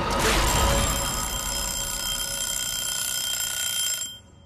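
A couple of scuffling impacts, then from about half a second in a sustained ringing tone of several steady high pitches, a soundtrack effect that cuts off suddenly at the end.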